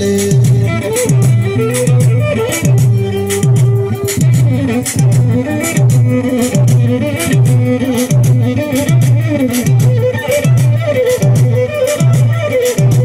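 Loud amplified Eritrean wedding music from a live band through speakers: a steadily repeating bass figure under a wavering lead melody, with sharp percussive hits throughout.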